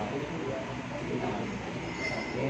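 Steady background noise of a busy indoor hall, with faint voices of people in the background.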